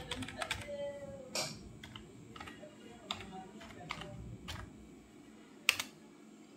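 Computer keyboard keys being typed in a scattered run of clicks while a login password is entered, with a louder double click near the end.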